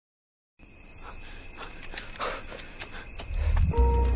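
A brief silence, then about half a second in a night ambience of steady insect chirring begins, with scattered soft clicks and rustles. A deep low drone swells up near the end.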